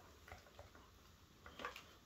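Near silence with a few faint clinks of metal spoons stirring in mugs.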